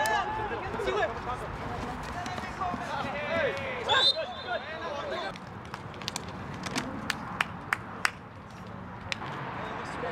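Soccer players shouting on an outdoor field, with a short high whistle-like tone about four seconds in. In the second half there is a run of sharp knocks, like a ball being kicked.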